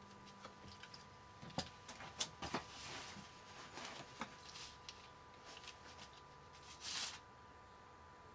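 Faint, scattered clicks and taps of hands fitting small circuit boards and wires onto the terminals of a lithium battery pack, with a brief rustle about seven seconds in.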